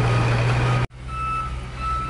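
Heavy machinery's engine running with a steady low drone that drops off suddenly about a second in, while a reversing alarm sounds short, repeated beeps.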